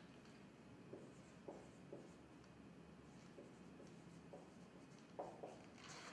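Marker drawing and writing on a whiteboard: a scattering of faint short scratchy strokes and light taps over quiet room tone.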